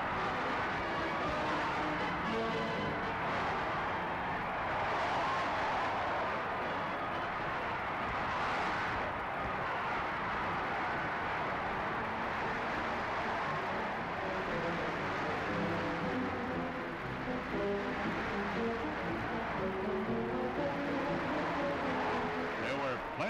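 A huge crowd roaring and cheering without a break, mixed with music whose notes come through more clearly in the second half, heard through the dull, narrow sound of an old 35mm film soundtrack.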